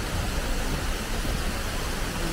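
Steady outdoor background noise: an even hiss with a low rumble underneath, unchanging throughout.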